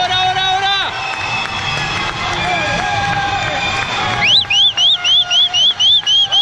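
Swim-meet spectators shouting and cheering, with long drawn-out shouts near the start. From about four seconds in, a shrill whistle sounds in quick repeated chirps, about four or five a second, louder than the crowd.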